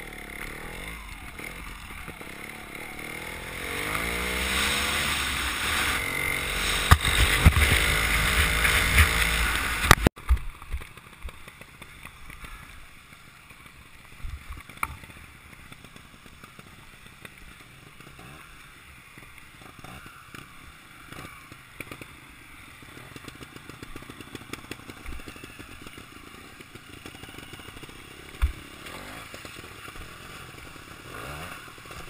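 Trials motorcycle engine revving up and down as it rides, heard close to the camera with wind noise. About ten seconds in the sound cuts off suddenly, leaving a much quieter stretch of faint running with scattered knocks.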